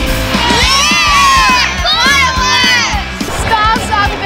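Rock backing music with a steady beat, with children cheering and shouting in high voices from about half a second in to about three seconds.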